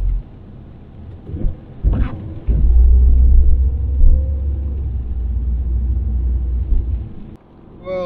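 Low rumble inside a moving car's cabin, engine and road noise, with a couple of knocks about two seconds in; the rumble swells about halfway through, then cuts off suddenly near the end.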